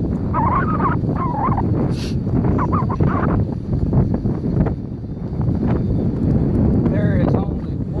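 Wind buffeting the microphone in a steady low rumble, with snatches of a voice over it in the first few seconds and again near the end.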